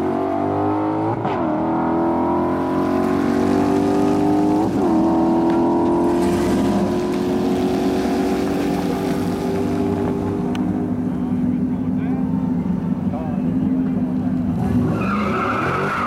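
2015 Ford Mustang GT's 5.0-litre V8, breathing through long-tube headers and an X-pipe exhaust, accelerating flat out down a drag strip with a manual gearbox. The engine note climbs in pitch through each gear, dropping at upshifts just over a second in and near five seconds in, then pulls one long rise before fading as the car runs away.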